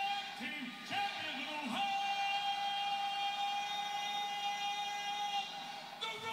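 A man shouting into a microphone over an arena sound system, a few short words and then one long yell held on a single steady pitch for about three and a half seconds, heard through a TV speaker.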